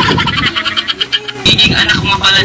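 Voices over background music, with an abrupt cut to different audio about one and a half seconds in.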